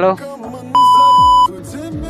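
An electronic beep: one steady high tone held for under a second near the middle, much louder than the music and voice around it.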